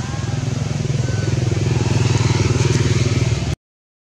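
An engine running steadily, growing louder over the first two seconds. The sound cuts off abruptly about half a second before the end.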